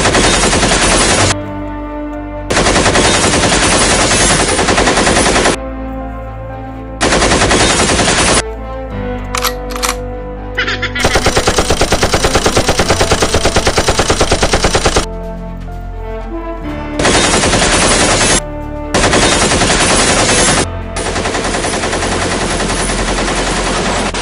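Automatic gunfire sound effect: repeated long bursts of rapid machine-gun shots, each lasting one to four seconds with short pauses between, laid over background music.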